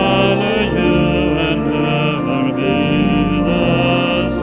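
A hymn: sustained organ-like chords that change about every second, with voices singing along.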